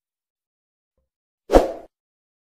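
Dead silence, then about one and a half seconds in a single short sound effect from a subscribe-button animation: a quick burst that fades within about a third of a second.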